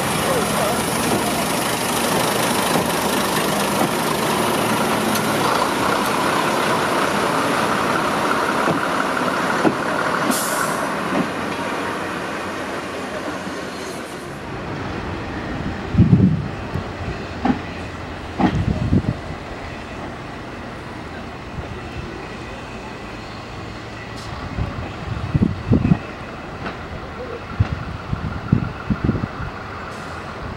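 British Rail Class 121 single-car diesel railcar running past at close range, its engine and wheels on the rails making a steady noise, with a short hiss about ten seconds in. After a sudden change about halfway through, the railcar is quieter and more distant, broken by short low bursts now and then.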